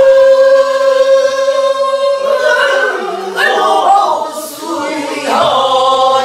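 A small group of pansori learners, mostly women, singing together in unison, unaccompanied: one long held note for about two seconds, then a wavering melodic line in the Korean folk vocal style.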